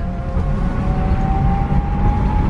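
Battery-electric Heathrow Terminal 5 personal rapid transit pod running along its guideway: a loud low rumble from the ride with a steady electric drive whine that rises slightly in pitch about halfway through.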